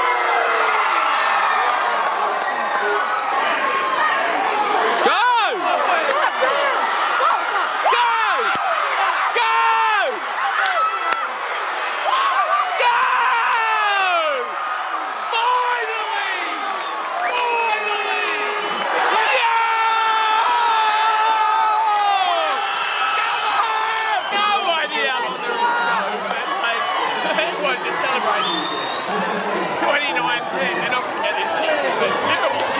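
Rugby crowd in a stadium stand shouting and cheering, many voices overlapping with short calls that rise and fall in pitch.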